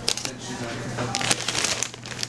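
Grocery packages being handled, with sharp clicks and crinkles of plastic wrapping: a few near the start and a cluster past the middle.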